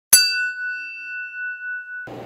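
Single bell-like ding sound effect: one sharp strike just after the start, then a clear high ring that slowly fades.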